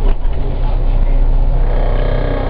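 City bus engine and road rumble heard from inside the cabin: a steady low drone, with a short knock just after the start.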